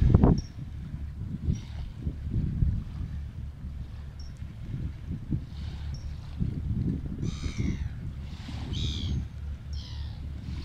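Wind buffeting the microphone, with a few harsh bird calls over it; the loudest calls come about seven and a half and nine seconds in, and again near the end.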